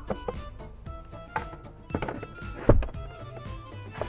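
A carpeted boot floor panel in a Peugeot 5008 knocks and thuds as it is handled and lowered into place, several times, with the loudest thud about two-thirds of the way through. Background music plays steadily underneath.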